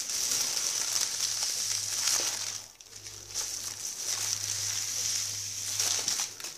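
Thin plastic bag rustling and crinkling as green peppers are packed into it by hand, with a brief lull about halfway through.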